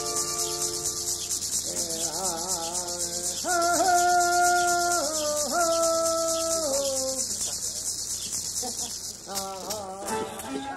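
Tarahumara gourd rattle shaken rapidly and steadily, a dense hiss that starts abruptly and stops about nine seconds in. From about two seconds in, a melody of long held notes, wavering at first, sounds over it.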